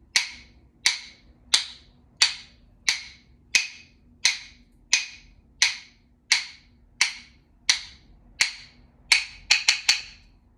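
A pair of rhythm sticks struck together in a steady beat, one sharp click about every 0.7 seconds, keeping a marching tempo. Near the end the strikes speed up into a quick run of four or five clicks, the signal to freeze.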